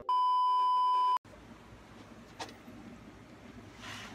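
Steady electronic test-tone beep of the kind played over colour bars, about a second long and cutting off sharply. It is followed by faint hiss with one light tap.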